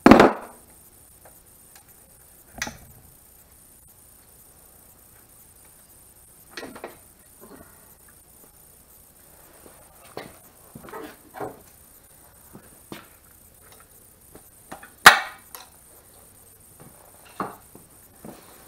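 Scattered metal clinks and knocks of parts and hand tools handled at the cylinder head and rocker assembly of a 1500cc air-cooled VW engine. The sharpest knocks come right at the start and about three seconds before the end.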